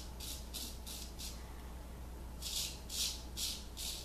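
Straight razor scraping through lathered stubble on the cheek in short strokes, about four a second. A run of strokes is followed by a pause of about a second, then a louder run near the end.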